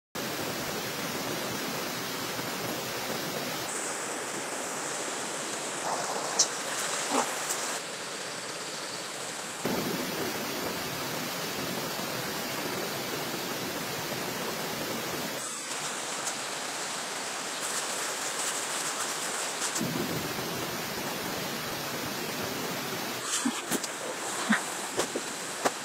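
Steady rush of a rocky stream running, its tone changing abruptly several times. A couple of brief knocks come about six and seven seconds in.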